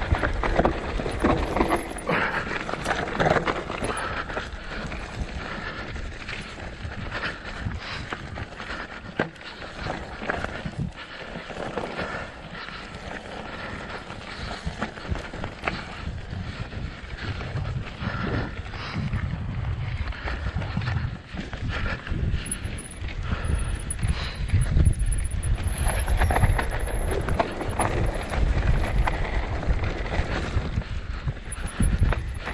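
Mountain bike descending a rough, rock-strewn trail: tyres crunching over loose stone and the bike rattling with a constant stream of knocks, over a low rumble of wind on the microphone.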